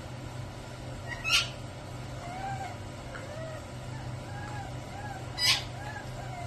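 Puppy whimpering softly in a series of small rising-and-falling whines, with two short, sharp, high-pitched squeals, about a second in and again near the end.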